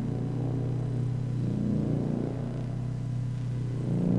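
Improvised electronic drone from oscillators: a low, steady, unbroken tone with softer, slowly wavering tones above it.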